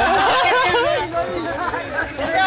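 People talking, several voices chattering.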